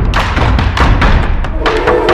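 Dramatic background music score: loud, rapid drum beats, about five a second with a heavy low end. A sustained held note joins them near the end.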